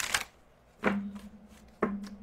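Tarot deck being shuffled by hand, with three sharp slaps of the cards about a second apart.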